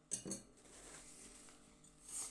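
Metal spoon clinking against a glass bowl of noodles, twice in quick succession just after the start.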